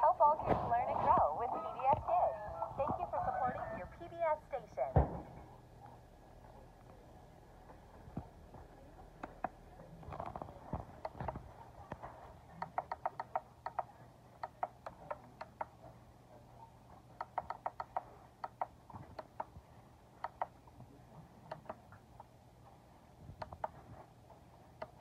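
A high-pitched voice for the first five seconds or so. Then a long series of short plastic clicks, some single and some in quick runs, from the buttons of a portable DVD player being pressed to step through the disc's menus, over a faint low hum.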